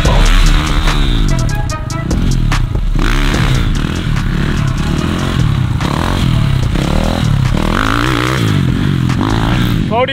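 Dirt bike engines revving, their pitch rising and falling over and over as the bikes ride and wheelie, mixed with background music.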